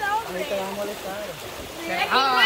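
Shallow, fast-flowing muddy stream rushing steadily, under voices.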